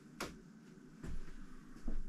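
A sharp click about a quarter second in, then two soft knocks, from things being handled in a small room.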